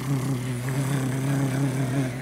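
A man imitating a cat's purr with his voice: a low, steady hum held at one pitch.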